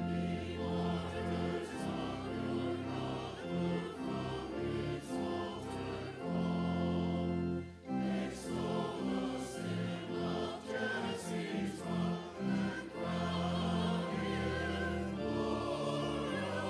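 Church choir singing with organ accompaniment in sustained chords. There is a brief pause between phrases about eight seconds in.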